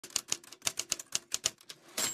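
Typewriter keys clacking in a quick, uneven run, about seven strikes a second.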